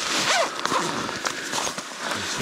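A zipper on a bicycle's rear pannier bag being pulled open, with the bag's fabric rustling as it is handled.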